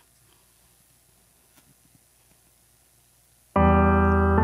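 Near silence, then about three and a half seconds in a piano-toned keyboard chord comes in and is held: the opening of a song's accompaniment.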